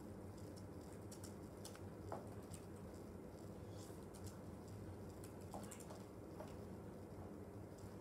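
Faint, irregular key clicks of typing on a Chromebook laptop keyboard.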